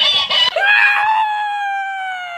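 Dancing, mimicking plush cactus toy playing back a voice in a sped-up squeaky pitch: a brief high chatter, then one long, shrill held squeal that drops in pitch at the end.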